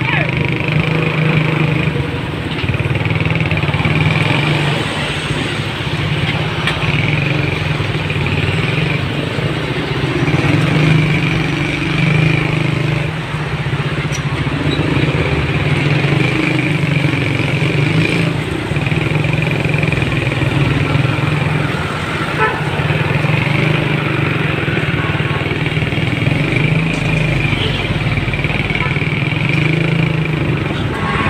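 Motorcycle engine running steadily at low speed through stopped traffic, with a constant low hum and the general noise of vehicles around it.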